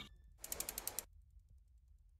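Logo-animation sound effect: a quick run of about half a dozen sharp mechanical clicks, like a ratchet, lasting about half a second, followed by near silence.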